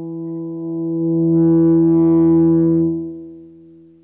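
Electric guitar (Gibson SG) holding a single sustained note, swelled in and out with an Ernie Ball volume pedal. The volume builds gradually, holds for about a second and a half in the middle, then fades away near the end.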